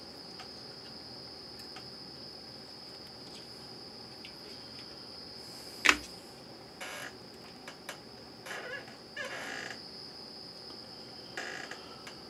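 A steady high-pitched whine runs throughout, with one sharp click about six seconds in and a few brief soft rustles in the second half.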